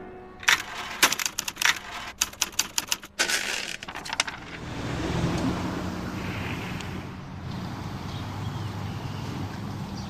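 A fast, irregular run of sharp clicks or taps lasting about four seconds, followed by a steady low background rumble.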